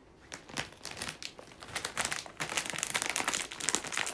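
A crinkly plastic packet being handled: rapid, irregular crinkling and crackling that gets busier about halfway through.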